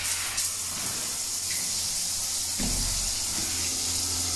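Timed push-button shower running: spray from an overhead shower head falling onto the floor of a small tiled cubicle, as a steady hiss.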